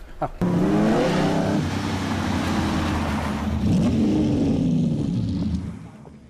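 Vintage Ferrari sports racing car's engine revving, starting suddenly about half a second in with a rising pitch, swelling up and down again around four seconds in, then cutting off suddenly just before the end.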